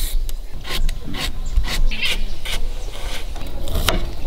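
Small knife shaving strips of peel off a raw carrot: a quick, irregular run of scraping strokes close to the microphone. Near the end, a sharp knock of a knife on a wooden cutting board.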